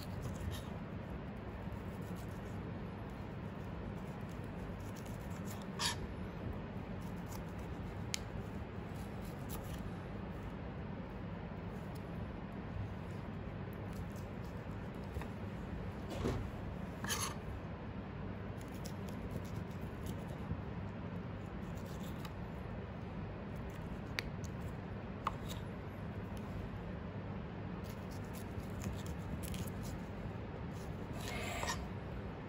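Small knife cutting and scraping cooked oxtail meat off the bone on a plastic cutting board, with a handful of sharp clicks where the blade knocks the board, over a steady background noise.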